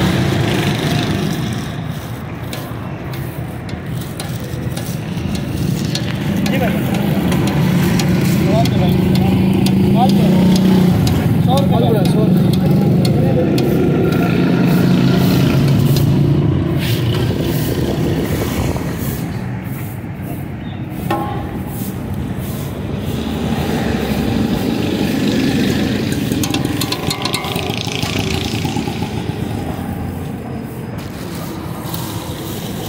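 Busy street noise: a steady low engine-like rumble and background voices, over batter frying in a large karahi of hot oil.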